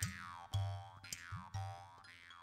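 Short closing music jingle: a low note with a quick downward-sliding tone about every half second, gradually fading.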